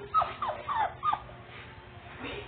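Young puppies whining, four short cries in quick succession in the first second or so, each falling in pitch.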